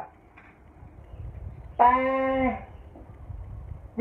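A man's voice holding one drawn-out syllable for under a second, about two seconds in, dropping slightly in pitch at its end, over a low background rumble.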